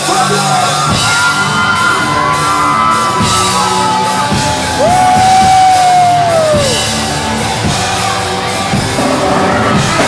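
Live rock band playing loudly, with electric guitars, bass and drums. About five seconds in, a long held note swells up and then falls off.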